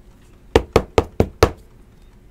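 Five quick, evenly spaced knocks, about five a second, on a hard surface.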